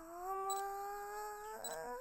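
A girl's voice holding one long hum-like note that slides down at first, holds steady, then lifts near the end. Two faint short high beeps sound over it.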